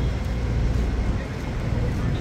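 Outdoor street ambience: a steady low rumble with a background murmur of voices.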